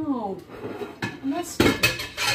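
A short vocal sound, then hard objects clattering in a tray of small items on a stone countertop, the loudest strokes in the last half-second.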